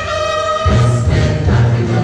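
Choir singing with orchestral accompaniment, performed live. A held chord rings with the bass dropping out briefly at the start, then the low bass comes back in under a second in.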